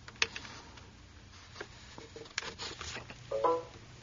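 USB plug pushed into a laptop's USB port with a faint click, followed by a few light clicks and a brief pitched tone about three and a half seconds in.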